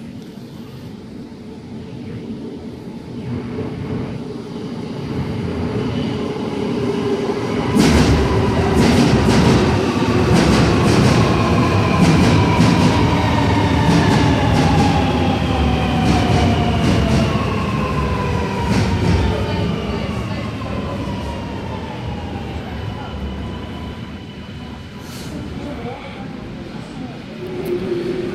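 Alstom Metropolis metro train arriving at an underground platform and slowing to a stop. A rumble builds over the first several seconds, and from about eight seconds in come sharp wheel clicks and several electric whines that fall slowly in pitch as the train brakes. It then fades as the train comes to rest.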